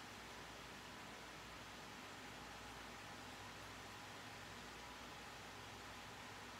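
Near silence: a steady faint hiss with a low hum, room tone and recording noise with no distinct sound.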